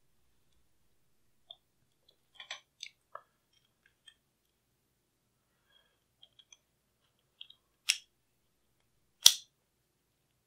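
Small metallic clicks and taps as the HK SP5's steel bolt parts, the firing pin and bolt carrier, are fitted together by hand. Two sharper clicks come near the end, the second, a little after nine seconds, the loudest.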